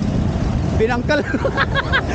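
Street noise: a steady low rumble of road traffic, with a man's voice breaking in from about half a second in.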